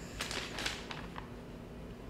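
Handling noise of fabric and stitching projects: a few short rustles in the first second, then a couple of small clicks.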